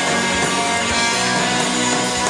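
Live rock band playing an instrumental passage: strummed electric guitars over bass and drums, without vocals.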